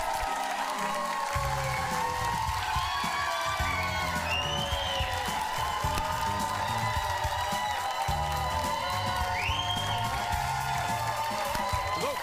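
Upbeat theme music, with a bass line coming in about a second in, over a studio audience cheering and applauding.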